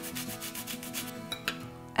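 Orange rind being zested on a flat handheld metal grater: a rapid series of scratchy rasping strokes that thin out after about a second, over faint background music.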